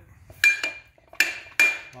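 Three sharp metal clanks, each with a short ring, as steel pipe is pulled forward and handled in the front chuck of a Ridgid 300 pipe threading machine.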